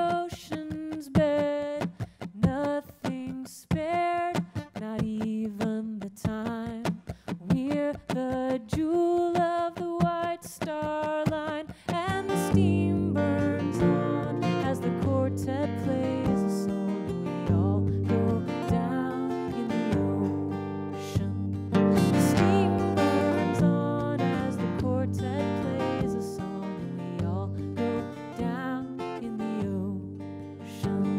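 A woman sings a sea shanty, her voice alone at first. About twelve seconds in, a strummed acoustic guitar comes in under the singing.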